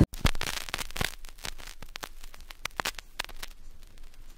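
Faint, irregular crackling and clicking, with sharp ticks scattered unevenly and no steady tone or rhythm.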